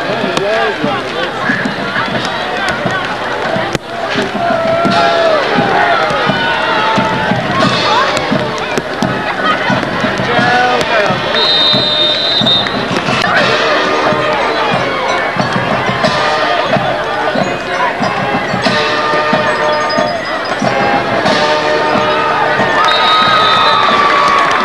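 Sideline crowd at a football game: many voices talking and shouting over each other throughout, with music and cheering mixed in.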